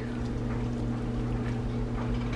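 Steady low hum, with faint soft sounds of a silicone spatula stirring saucy linguine in a cast-iron skillet.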